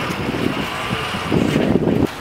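Wind buffeting a camera's microphone outdoors: a low, gusty rumble that grows stronger in the second half and cuts off abruptly at the end.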